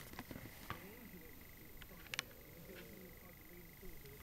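Quiet room tone with a faint steady high whine and a few soft handling clicks from the handheld camera and cardboard box, with a sharper double click a little after two seconds.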